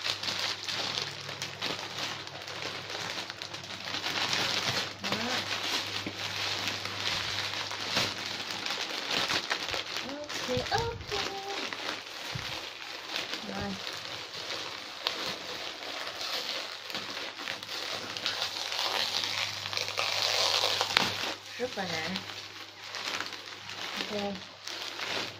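Plastic courier bag and plastic packaging crinkling and rustling as they are pulled open and handled, in long uneven rustles that swell and fade. A faint steady low hum runs underneath.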